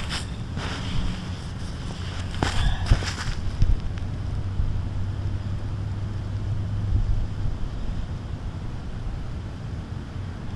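Wind buffeting the microphone as a steady low rumble, with a few sharp knocks a little over two seconds in.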